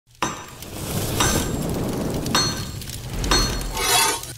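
Logo-intro sound effects: four sharp hits about a second apart, each with a high ringing tail, over a low rumble, swelling into a rush near the end.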